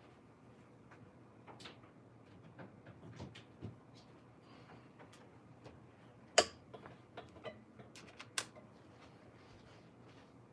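Scattered small clicks and knocks over low room tone, with a sharper knock about six seconds in and another about eight seconds in.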